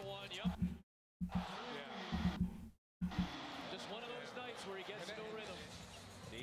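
Basketball broadcast audio playing quietly: a commentator talking while a basketball is dribbled on the court. The sound cuts out twice for a moment in the first three seconds.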